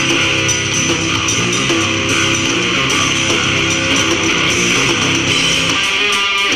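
Rock band playing live, led by electric guitar over bass guitar, steady and loud.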